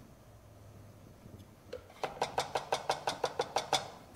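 A metal spoon clinking quickly against the side of a jug, about seven clinks a second, starting about halfway through and stopping just before the end.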